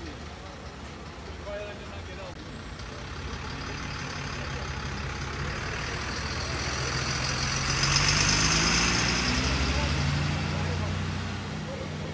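A large vehicle's engine running, a low drone that swells to its loudest about eight seconds in, with a high hiss over it at the peak, and then eases off toward the end.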